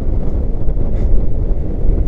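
Wind buffeting the microphone of an action camera worn by a rope jumper swinging on the rope: a loud, steady low rumble.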